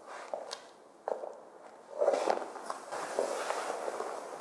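Footsteps and shuffling on a wooden floor: a few separate steps, then louder, busier movement about halfway through.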